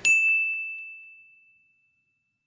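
A single bright bell-like ding, struck once and ringing on one clear high pitch, fading away over about a second and a half.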